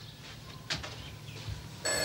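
Home telephone ringing: a quiet gap between rings, then the next ring starts near the end. There is a faint click about two-thirds of a second in.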